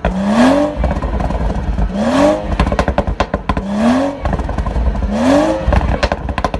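BMW 340i F30's turbocharged 3.0-litre B58 inline-six, Stage 2 tuned with a crackle map, blipped four times in quick succession. Each rev rises briefly and then drops off into a rapid string of crackles and pops from the stock exhaust.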